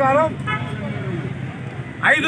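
A man's speech breaks off early, leaving a steady low rumble of road traffic.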